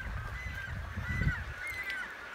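Short, high bird calls from a cormorant and pelican nesting colony repeat over a low, uneven rumble on the microphone.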